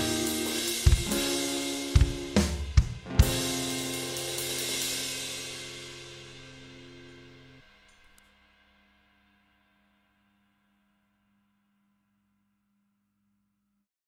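Closing bars of a band piece: a handful of last hits on an electronic drum kit, then a cymbal wash and a held chord ring out and fade away. By about eight seconds in they die to silence.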